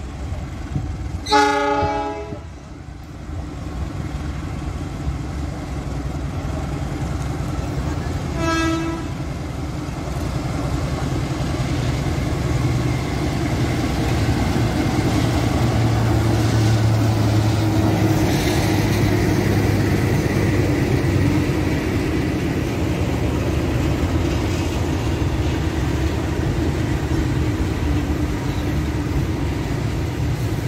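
KAI CC206 diesel-electric locomotive sounding its horn twice: a loud blast about a second in and a shorter one around nine seconds in. Its diesel engine then grows louder as it passes close by at about the middle, followed by the steady rumble of a long container freight train rolling past.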